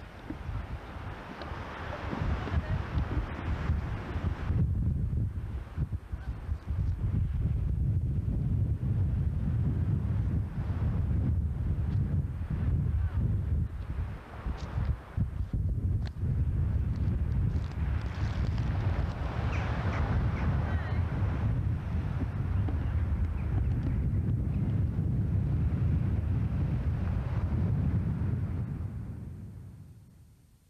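Wind buffeting the camcorder microphone on an open beach: a steady low rumble that fades out near the end.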